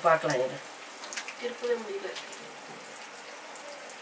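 Oil sizzling steadily in a frying pan as bread pieces deep-fry, with a few light ticks and pops.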